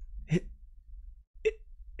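Two brief, short vocal sounds from a person, about a second apart, over a faint low hum.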